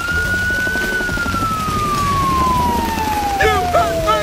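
A siren winds up to a high pitch, holds it for about a second, then falls slowly and steadily for about three seconds over a low rumble. A few short, high yelps from a corgi come near the end.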